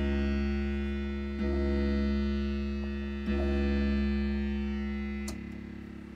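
SLM analog pedal bass synthesizer (the Jen P-700 design) playing deep, sustained bass notes as its pedals are pressed by hand: the same low note sounds three times, each slowly fading, then a click and a quieter, different note near the end.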